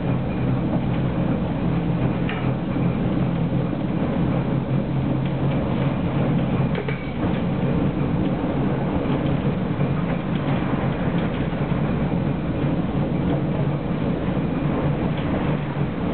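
Tram running along street track, heard from the driver's cab: a steady hum and rumble of motors and wheels on rail, with a few faint brief high squeaks or clicks.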